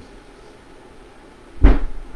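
A single sharp thump about one and a half seconds in, heaviest in the low end and dying away quickly; before it there is only faint background noise.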